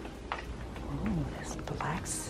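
Footsteps clicking about once every 0.7 seconds on a hard store floor over a low steady hum of store ambience, with faint voices of other people talking in the background in the second half.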